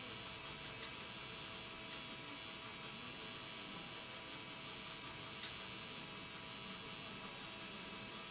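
Low, steady background hiss with a faint electrical hum, and a single small click about five seconds in.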